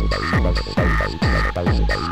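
Hard trance / acid techno track: a steady four-on-the-floor kick drum a little over two beats a second, with a repeating synth line whose notes fall in pitch between the beats over sustained high synth tones.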